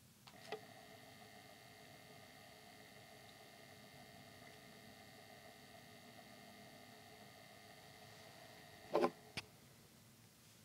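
A star projector switches on with a click and then runs with a faint, steady hum of several constant tones from its motor and electronics. Two louder clicks come near the end, and the hum stops after them.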